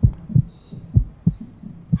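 Heartbeat sound effect: low double thumps, lub-dub, repeating about once a second as a suspense cue.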